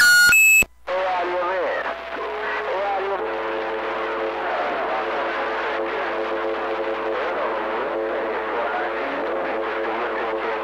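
A CB radio's short electronic roger beep at the very start as a transmission ends. Then the receiver's steady hiss with faint, garbled overlapping voices of distant stations and a steady whistle of several tones held together, as heard on a busy 11-metre channel over long-distance skip.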